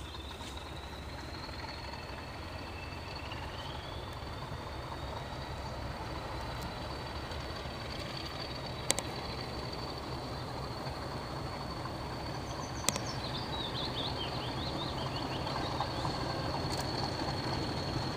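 Distant English Electric Class 40 diesel locomotive approaching, its engine a low rumble that grows slowly louder, with birds chirping and two sharp clicks in the middle.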